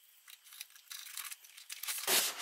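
Faint rustling and scraping of packaging being handled: hands working in a cardboard box's foam insert, with a few small ticks.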